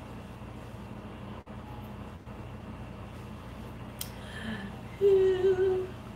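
Steady low room hum, then near the end a woman's voice holds a short hummed 'mmm' on one steady pitch for about a second.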